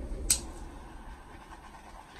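Small handheld butane torch: a sharp click about a third of a second in, then a faint steady hiss as the flame is passed over wet pour paint to bring up cells.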